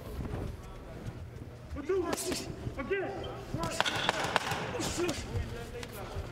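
Ringside sounds of a boxing bout: a few sharp thuds of gloved punches and boxing shoes on the ring canvas, with faint shouted voices from around the ring and a low hum behind.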